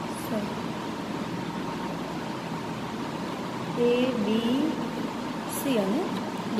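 Steady background noise with a faint steady tone, and short stretches of a person's voice about four seconds in and again near the end.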